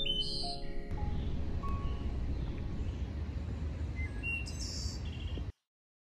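A held musical chord ending within the first second, then outdoor ambience: a low rumble of wind or background noise with a few short, scattered bird chirps. The sound cuts off abruptly near the end.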